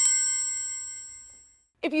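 A Samsung smartphone ringing, set off remotely by Android Device Manager: the last bell-like tone of its ringtone dies away over about a second and a half.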